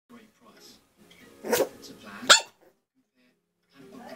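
A young Jack Russell–Chihuahua cross (Jackawawa) puppy giving two short, sharp barks about a second and a half in and just after two seconds, the second the louder, over faint voices.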